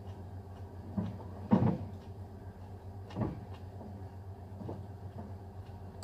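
A few dull knocks of a metal spoon against a plate while eating, the loudest about one and a half seconds in, over a steady low hum.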